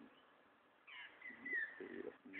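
Faint bird call: a high, whistled note with a curving pitch that starts about a second in.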